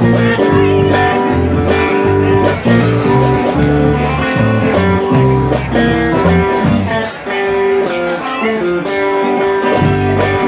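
Live band playing an instrumental passage: electric guitar over a bass guitar line, with no singing.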